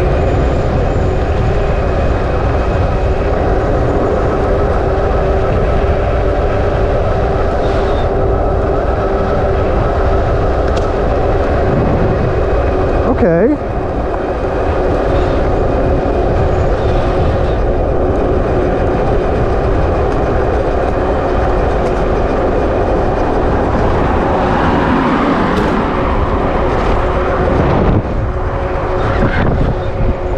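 Wind rushing and buffeting over a helmet-mounted GoPro's microphone while riding an electric bike at speed, with a steady whine underneath. The wind swells louder about 25 s in.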